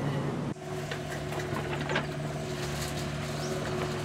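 Cartoon vehicle engine sound effect: a steady machine hum with a fast, fine rattle, changing abruptly about half a second in.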